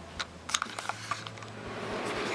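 Handling noise from a handheld camera: a few light clicks and taps in the first second or so, over a low hum.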